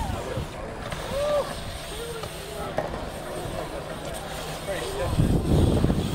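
Faint voices and calls of people in the background over a steady noise bed. About five seconds in, a low rumble of wind on the microphone grows louder.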